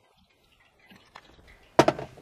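Quiet, with faint small handling sounds, then a sharp knock near the end.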